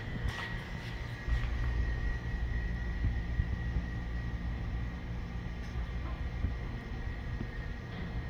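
A steady low rumble with a faint, steady high tone above it, stepping up slightly in level about a second in.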